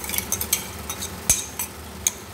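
Steel spatula scraping and clinking against a metal kadai as tomato-cashew paste is stirred into frying masala, with light sizzling underneath. One sharp knock of the spatula on the pan comes about two-thirds of the way through.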